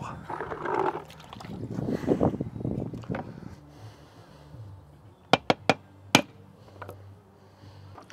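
Water sloshing in a bucket and wet mortar being worked, then four sharp knocks a little past the middle as a trowel taps an aerated concrete step block into place.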